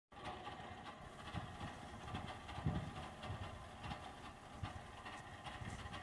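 Faint steady hum with a few soft low thumps: quiet background noise picked up by the recording microphone.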